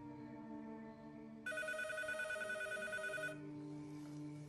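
A telephone ringing: one ring about two seconds long, starting about a second and a half in and cutting off sharply.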